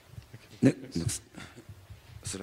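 A man's voice in a few short, halting fragments of speech, loudest about two-thirds of a second in and again around one second.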